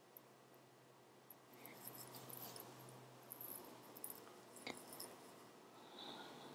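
Faint rustling and scratching of hands handling a crocheted yarn cushion, with a few small clicks among it.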